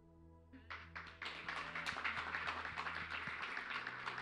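Congregation applauding, the clapping starting about a second in and carrying on steadily, over soft sustained background music chords.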